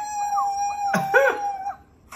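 A voice holding one long, steady high note for about two seconds, held at an even pitch throughout. Another voice cuts in briefly over it about halfway through.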